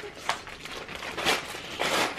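Christmas wrapping paper crinkling and tearing as a present is unwrapped, in a few short rustles and rips, the loudest near the end.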